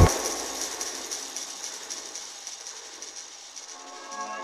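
Live electronic music dropping into a breakdown. The bass and drums cut out suddenly, leaving a quiet, thin high-pitched texture with faint ticking that slowly fades.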